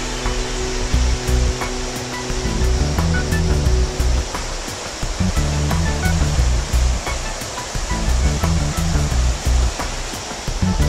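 Background music with a steady beat and a moving bass line, laid over the steady rush of whitewater rapids.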